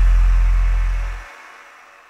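Tail of a cinematic intro sound effect: a deep, sustained bass boom under a hiss, which cuts off a little over a second in and leaves a faint, fading hiss.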